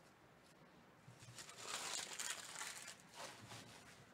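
A trading-card pack wrapper being torn open and crinkled by hand: a crinkling, tearing rustle that starts about a second in, is loudest through the middle, and ends with a short crackle.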